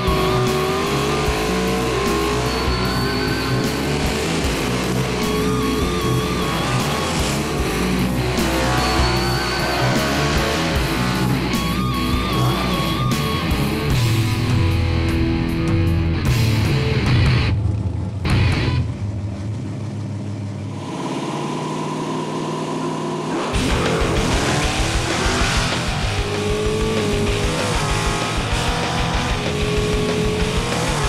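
Small-block V8 drag cars running at the strip, revving up hard about halfway through and later idling with a fast, even pulse, under a background music bed.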